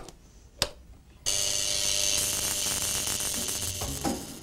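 Two sharp glass clinks as a glass electrode is handled in its holder, then, about a second in, a high-frequency facial machine starts with a sudden loud, steady electrical buzzing hiss.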